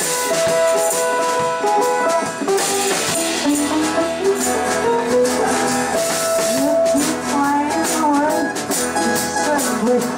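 Live acoustic band music: a strummed guitar and hand percussion keep a quick rhythm under long held melody notes, with no words sung.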